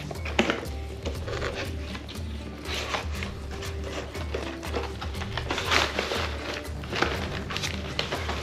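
Background music with a steady bass beat, over scattered scrapes and rubs of a cardboard box lid being worked open and slid off.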